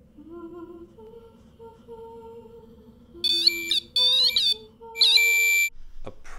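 REM-POD paranormal detector going off: three loud bursts of high, warbling electronic alarm tones in the second half, over quieter low tones that step in pitch from the start.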